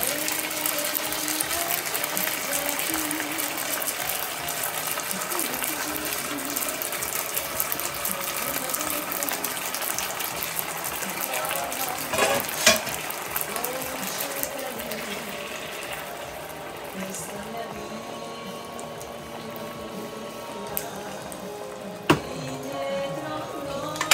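Onion-and-sauce mixture sizzling and crackling in a hot nonstick skillet, dying down slowly as it settles to a simmer. A spatula scrapes sauce in from a second pan at the start, with a sharp knock about twelve seconds in and another near the end.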